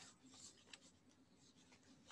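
Near silence: faint room tone over an online call, with a faint tick less than a second in.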